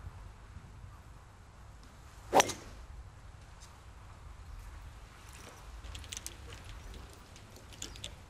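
Golf driver striking a ball off the tee: one sharp crack about two and a half seconds in, over faint outdoor ambience.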